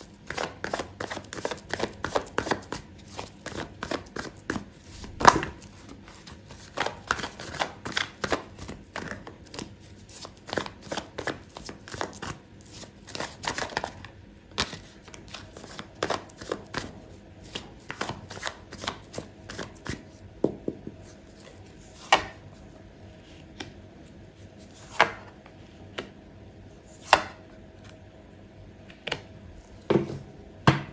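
A tarot deck being shuffled by hand: a quick run of soft card taps and flicks through the first half. After that come fewer, separate sharper ticks as cards are drawn and laid face down on the mat.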